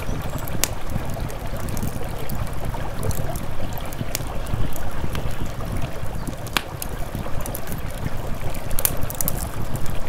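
Wood campfire crackling, with a few sharp pops at irregular intervals, over a steady low rush of river water and wind on the microphone.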